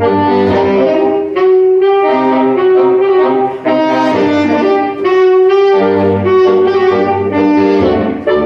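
A saxophone quartet, a straight soprano among the four saxophones, playing in harmony: held chords that move from note to note, with the low bass part dropping out for a few seconds in the middle and coming back.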